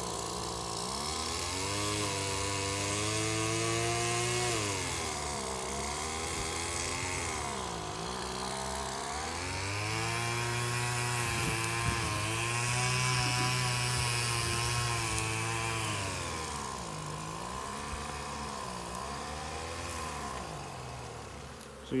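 A small engine running, its pitch rising and falling slowly every few seconds, with honeybees buzzing.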